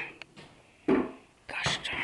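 A person whispering in short, breathy syllables, as if softly telling a kitten to stay.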